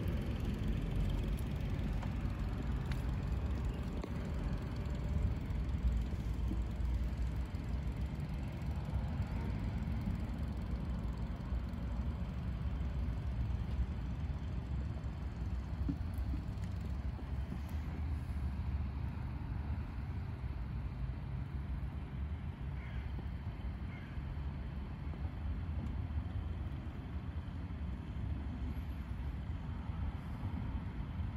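Diaphragm pump running steadily, a continuous low hum, as it draws new power steering fluid out of the bottle through a clear hose.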